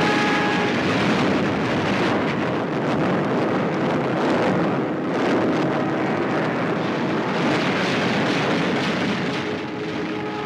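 Loud, continuous roar of aircraft engines on a 1940s wartime film soundtrack, rising and falling slightly as planes pass.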